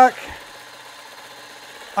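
Juki Miyabi J350QVP long-arm quilting machine running as it stitches, a faint, steady, even hum. A man's voice trails off at the very start.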